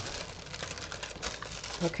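Tissue paper rustling quietly as it is smoothed down by hand and then peeled up from a gel printing plate.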